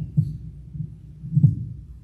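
Two dull, low thumps about a second apart, the second louder, over a steady low hum.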